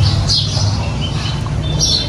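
A small bird chirping, two short high calls, about half a second in and near the end, over a steady low hum.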